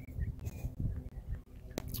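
Quiet desert outdoor background: an uneven low rumble of wind and handling on a phone microphone, with a few brief high bird chirps and one sharp click near the end.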